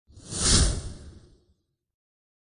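A single whoosh transition sound effect, with a low rumble under it, that swells to a peak about half a second in and fades away by about a second and a half.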